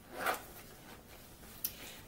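A short zip of a small fabric pouch being zipped shut, then a brief sharp click about a second and a half in.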